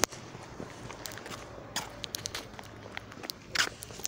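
Footsteps on concrete paving stones: a few soft, irregular steps.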